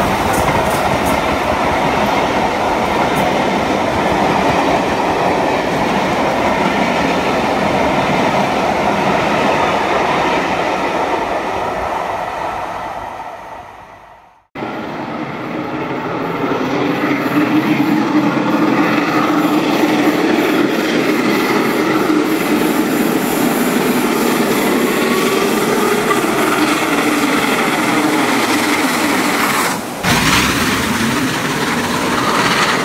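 Steam-hauled passenger train led by the three-cylinder LMS Royal Scot class 4-6-0 No. 46100: its coaches clatter past on the rails and the sound fades as the train draws away. About halfway through, the sound breaks off suddenly, then the train is heard again, approaching and growing louder.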